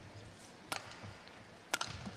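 Two sharp racket strikes on a shuttlecock, about a second apart, during a badminton rally, over a faint arena background.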